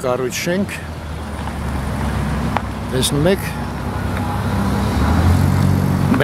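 Car engine running close by, its low rumble growing louder over the last couple of seconds, over a background of street traffic.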